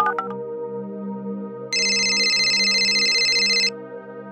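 The last few phone keypad beeps, then one electronic telephone ring about two seconds long that cuts off suddenly, over a steady music bed.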